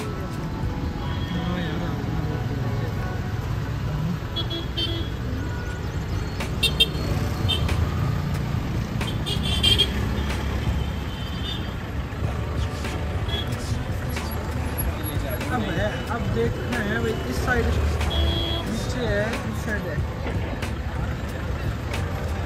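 Busy road traffic: vehicle engines running steadily with short car horn toots now and then, and people's voices nearby.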